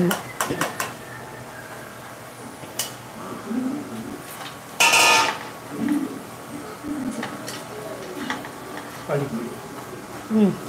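Metal kitchen utensils and pans clinking: a few light clicks, then one loud ringing clang about five seconds in.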